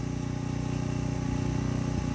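A steady low hum made of several held tones that does not change.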